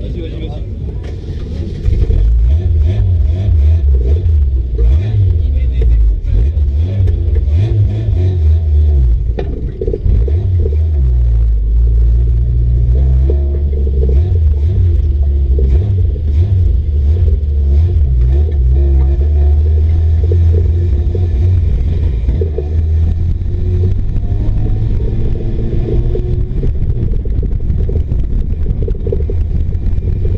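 Race car engine heard from inside the stripped-out cabin, coming up loudly about two seconds in and then running with a heavy low rumble as the car drives off, rising and easing with the throttle.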